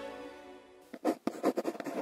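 Soft music notes fade out, then about a second in comes a quick run of scratchy pen-on-paper strokes, a handwriting sound effect.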